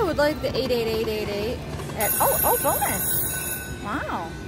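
Electronic slot machine sounds during a reel spin: a falling tone at the start, a held wavering tone, then a run of quick rising-and-falling chirps about halfway through, and another pair near the end.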